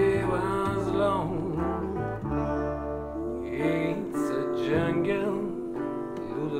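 Acoustic trad-jazz trio playing: a resonator guitar picked over held notes from a ukulele bass, with a voice singing.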